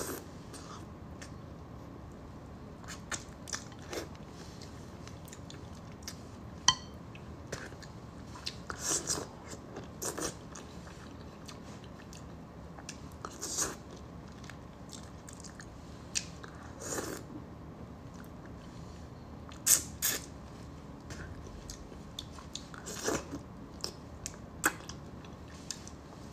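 Close-miked eating sounds of braised fish tail: scattered wet mouth clicks and smacks of chewing, with a few longer wet sounds every few seconds.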